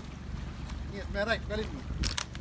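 A person's voice speaking or calling briefly, about halfway in, over a steady low rumble.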